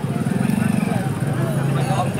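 Street noise: a vehicle engine running steadily close by, under background voices.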